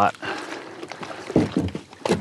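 Water sloshing around a plastic fishing kayak as it is moved in the shallows at the shore, with a short burst of a man's voice about one and a half seconds in.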